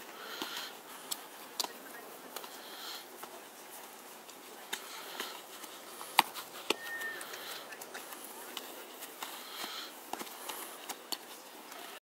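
Footballs being kicked by children in a dribbling drill: scattered sharp kicks, the loudest about six seconds in, over faint distant children's voices.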